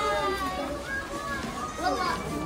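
High-pitched children's voices and chatter in a busy shop.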